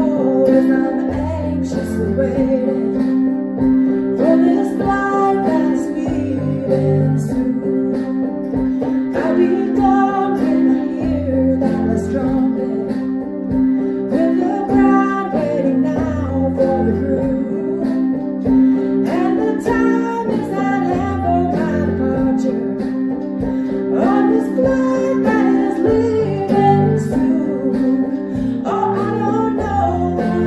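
A woman singing while playing chords on a portable electronic keyboard.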